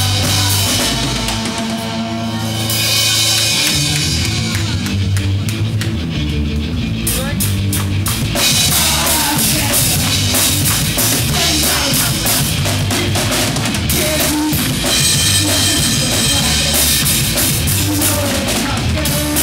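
Live rock band playing loud: drum kit with bass drum and snare driving under electric guitars. The low end briefly drops out about two seconds in before the full band comes back in.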